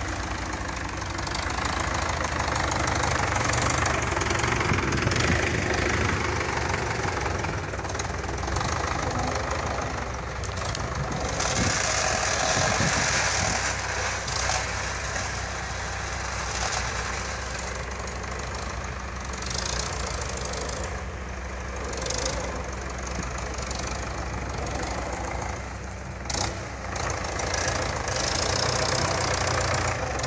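MTZ-82 tractor's four-cylinder diesel engine running under load in deep mud, its level swelling and easing.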